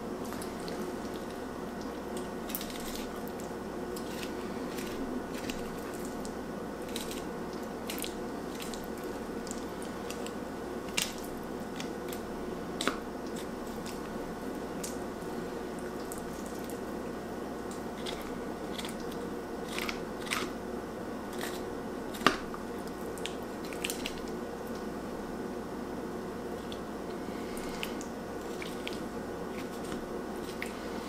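Fillet knife slicing a burbot along its backbone and ribs on a wooden cutting board: soft wet cutting and scraping, broken by a few sharp clicks of the blade against bone or board, the loudest about three-quarters of the way through. A steady hum runs underneath.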